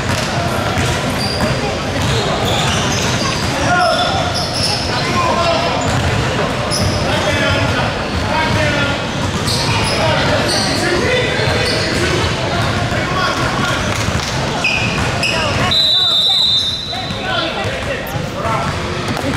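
Basketball game in a large gym: the ball bouncing on the hardwood court and players' voices calling, all echoing in the hall. Near the end comes a brief steady high tone.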